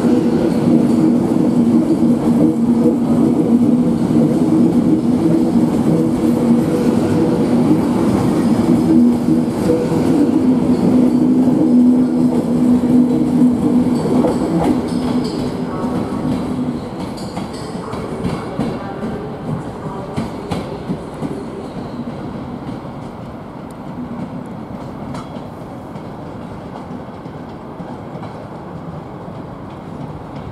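Class 390 Pendolino electric train pulling away, a steady electric hum with two level tones under the rumble of its wheels. After about 17 s the hum stops and the sound fades as the train draws off, with scattered clicks of its wheels over the pointwork.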